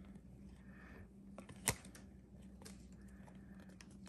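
Trading cards handled and shuffled in the hands: faint slides and light clicks, with one sharper click a little under two seconds in.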